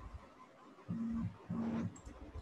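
A person's two short closed-mouth hums, like an acknowledging "mm-hmm", each held at one steady pitch, starting about a second in and half a second apart.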